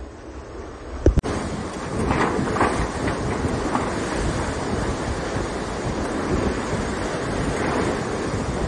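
Water rushing and hissing along the hull of an IMOCA 60 racing yacht moving fast under sail, with a steady rumble from the boat and wind buffeting the onboard camera's microphone. About a second in there is a sharp click and the sound jumps louder, with brief hisses of spray in the seconds after.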